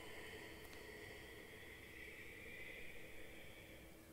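Ujjayi breath: one long, soft, hissing exhalation through a narrowed throat with the mouth closed, fading out near the end.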